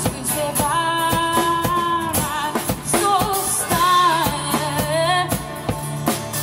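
A woman singing to acoustic guitar and a drum kit, with some long held notes sung with vibrato.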